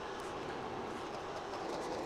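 Steady fan noise from a power inverter running under a heavy load of about 165–185 A drawn from a 12 V LiFePO4 battery. The inverter is being pushed past what it can handle.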